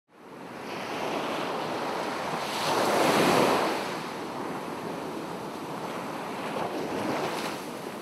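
Sea surf breaking and washing in. One wave swells loudest about three seconds in.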